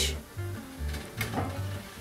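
Background music with a steady bass beat. About a second in comes a short metallic click and scrape, a metal spatula against the oven rack as a melted-cheese sandwich is slid across it.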